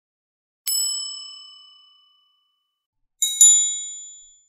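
Bell-like ding sound effects: one ding about two-thirds of a second in that rings out for over a second, then a quick double ding near the end, higher and louder.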